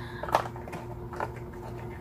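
A few faint light taps and rustles as hands handle the contents of a cardboard craft-kit box (ink pad, paper, plastic-wrapped pieces), over a low steady hum.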